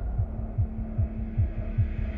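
Tense documentary underscore: low, heartbeat-like bass pulses in quick pairs, a little over two pairs a second, over a steady low hum.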